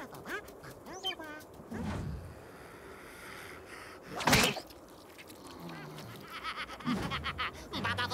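Cartoon Rabbids' squawking, quack-like gibberish cries and yells in short bursts, with one sudden loud hit sound effect about four seconds in.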